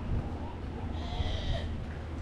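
Outdoor walking ambience: steady low rumble of wind on the microphone. A brief high-pitched call sounds about a second in.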